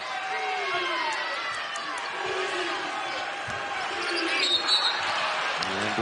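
A basketball being dribbled on a hardwood arena court, with a few irregular bounces over the steady murmur and shouts of the arena crowd. The crowd gets a little louder near the end.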